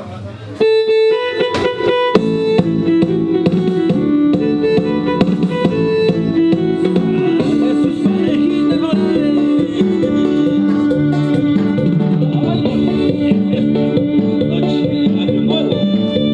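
Live arranger-keyboard music on a Yamaha PSR-S950, starting about half a second in. A melody with guitar- and violin-like voices plays over a steady programmed drum beat.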